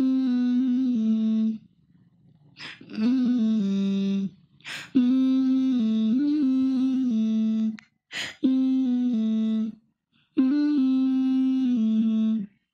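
A voice humming a slow melody in phrases of a few held notes each, with short gaps between the phrases and a brief swish before each one.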